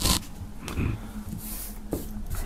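Quiet handling noise of paper stickers being set down on a wooden tabletop, with a short burst of noise at the very start.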